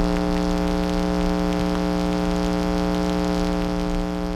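Loud, steady electronic drone: several pitches held unchanging over a low rumble and hiss.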